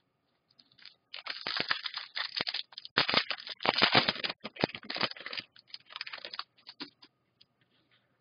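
Trading-card packaging and cards being handled: a run of crinkling, scraping and rustling that starts about a second in and dies away after about five seconds.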